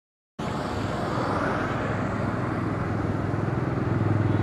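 Motorcycle engine running steadily on the move, mixed with a constant rush of air and road noise; the sound cuts in about half a second in.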